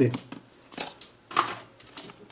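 Two brief, soft rustling handling noises from hands moving the loosened iMac LCD panel and its cables, after the end of a spoken word.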